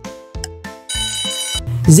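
Cartoon alarm-clock bell sound effect ringing for under a second, about a second in, signalling that a quiz countdown timer has run out, over a light background music beat.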